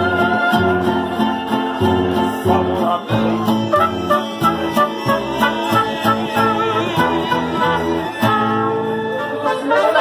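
Live mariachi band playing: strummed vihuela and guitar with trumpet and violins, keeping a steady rhythm.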